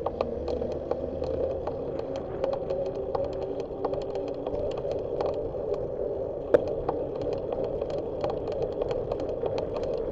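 Riding noise of a bicycle from a camera mounted on the bike: a steady hum of tyres on asphalt with many small rattling clicks, and one sharper knock about six and a half seconds in.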